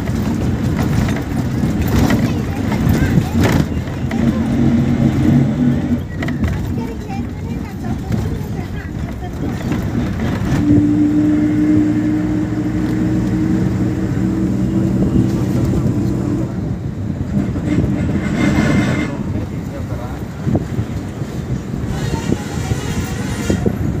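A bus driving along a road, heard from inside by an open window: engine running with road and wind noise, and a steady engine note that holds for several seconds in the middle.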